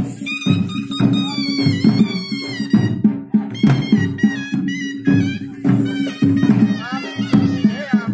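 Himachali folk band playing: a reedy wind instrument plays a wavering, ornamented melody over a steady low drone and regular drum beats.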